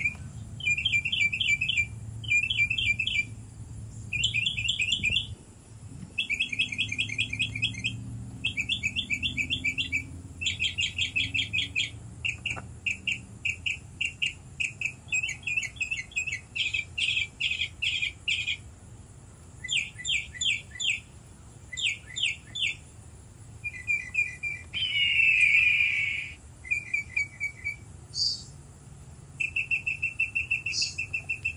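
Small birds chirping in rapid trills: short bursts of quick repeated notes, about a second each, following one another throughout. A low rumble runs underneath during the first half.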